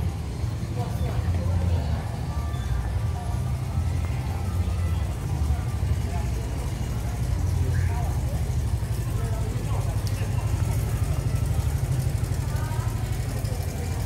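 Street ambience: a steady low rumble of traffic, with voices and music in the background.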